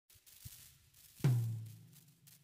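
A single deep drum hit from a music backing track about a second in, its pitch sinking as it rings out, after a softer thud just before.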